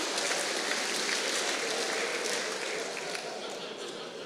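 Audience applauding in a large hall, dying away gradually over a few seconds, with some voices mixed in.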